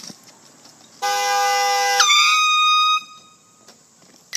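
A horn, of the air-horn kind, sounds loudly for about two seconds, starting about a second in: a steady chord that switches abruptly halfway through to a higher, different tone, then cuts off suddenly.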